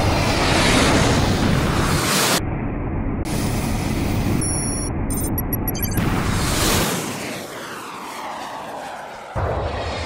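Designed jet-flight sound of fighter jets and Iron Man's suit: a loud rush of jet noise that turns suddenly muffled a little over two seconds in, a short run of electronic bleeps around the middle, then a fresh surge with falling pass-by tones and a sudden loud hit near the end.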